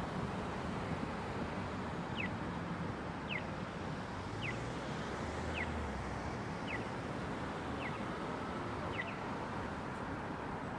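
Steady city street traffic noise, with a short high falling chirp repeated about once a second, seven times, starting about two seconds in.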